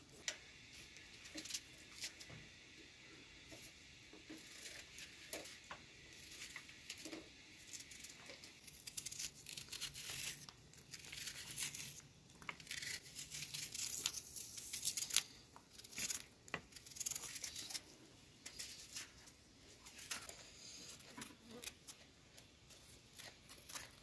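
Kitchen knife cutting raw onion and green bell pepper held in the hand: an irregular run of short, crisp cuts, with slices dropping into a plastic colander.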